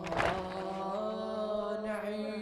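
Male radood chanting a Shia lament through a microphone, holding long, slowly wavering notes. A single sharp hit sounds just after the start.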